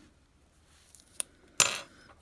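Metal tweezers set down on a hard tabletop: a short, sharp clatter about one and a half seconds in, after a couple of faint clicks.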